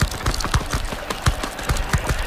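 Sound-design effects of irregular clicks and low knocks, about six a second, over a steady hiss. The louder knocks come near the start, about halfway through and at the end.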